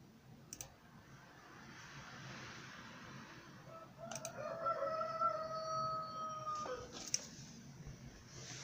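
One long bird call, held level for about two and a half seconds from about four seconds in and dropping in pitch at its end. Short sharp clicks come about half a second in, at about four seconds and at about seven seconds.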